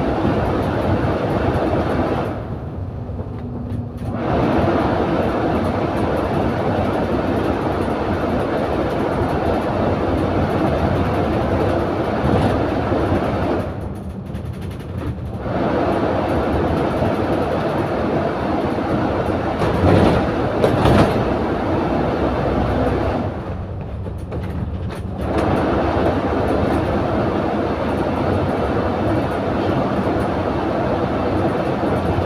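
Double-decker bus heard from inside on the upper deck: steady engine and road noise with rattling, easing off briefly three times. A couple of sharp knocks come about two-thirds of the way through.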